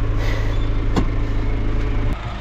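John Deere loader tractor's diesel engine running steadily, heard from inside the cab, with one sharp click about halfway through.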